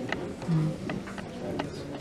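Low murmur of voices in a meeting room, with a few sharp, light clicks scattered through it.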